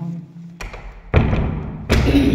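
A flat's front door pulled shut by its knob: three knocks as it swings to and latches, the loudest about a second in.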